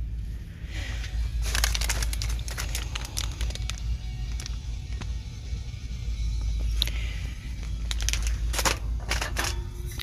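Store background music playing over a steady low rumble, with crinkling of plastic packaging and handling knocks as items are picked up and turned in the hand.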